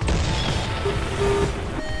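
Background music track with a loud, noisy crash-like sound effect that cuts in abruptly at the start and carries on.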